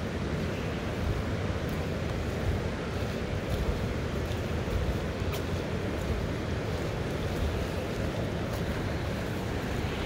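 Steady rushing of a fast, choppy river, mixed with wind buffeting the microphone.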